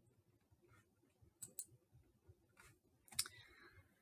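Near silence: faint room tone with a few soft clicks, a pair about a second and a half in and another about three seconds in.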